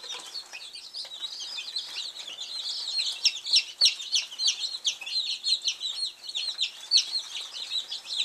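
A brooder full of young chicks peeping all at once: a dense, unbroken chorus of short, high, falling peeps. The chicks are warm under the heat lamp and settling down.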